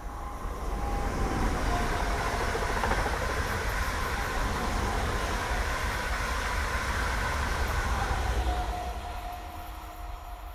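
Binaural in-ear-microphone recording of a train passing close by from behind. The rush of rail noise builds over about a second, stays loud, and fades away near the end, with a few faint whining tones that drift slightly lower above it.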